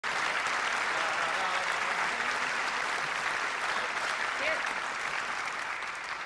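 Concert audience applauding steadily in a large hall, with a voice calling out from the crowd about four and a half seconds in; the applause begins to die away near the end.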